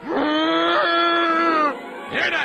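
A cartoon dog character's long, angry yell in a man's voice, rising at the onset and then held on one pitch for about a second and a half before breaking off.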